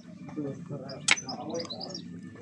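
Small birds chirping faintly among trees, over low murmured voices, with one sharp click about a second in.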